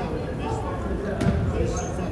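A basketball bounces once on the hardwood gym floor, a sharp thump about a second in, with voices talking around it.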